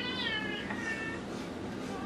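A faint, high-pitched wavering cry that bends up and down in pitch through the first second, then fades.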